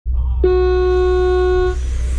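A single long electronic start tone from the race-timing public-address system, beginning about half a second in and held steady for just over a second before cutting off: the start signal for a brushless RC car final. A low steady hum runs underneath.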